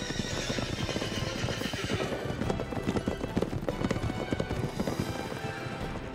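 Horse hoofbeats, a rapid, irregular clatter of hooves that is loudest in the middle stretch, over orchestral-style theme music.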